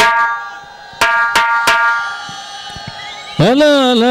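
Four ringing drum strikes that die away, then, about three and a half seconds in, a man's amplified voice begins a long, held chanted note.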